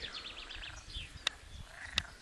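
Outdoor birdsong: a quick high trill in the first half-second and a few short chirps. Two sharp clicks land later, a little over a second in and at the end.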